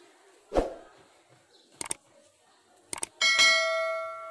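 A dull bump and a few sharp clicks, then a struck piece of metal rings out once about three seconds in, a clear ringing tone that dies away slowly.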